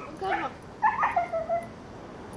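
A white puppy giving two short whining yelps, the second longer and falling in pitch.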